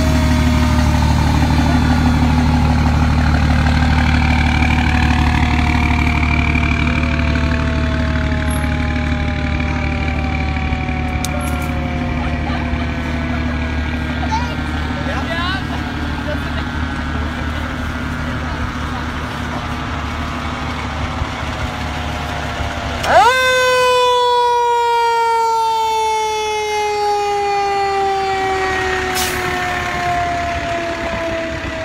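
Fire engine siren winding slowly down in pitch for about twenty seconds, over the steady low hum of the truck's engine; about 23 s in it winds sharply up again and then falls slowly once more.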